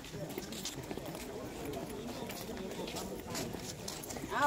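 Footsteps on stone paving, a steady run of short clicks, under indistinct voices of people talking.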